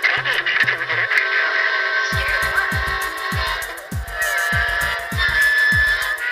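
Electronic techno-jazz track produced in Reason software. A stepping bass line plays at first, then about two seconds in a steady electronic kick drum enters with a falling thud on each beat, under hi-hat ticks and held synth notes.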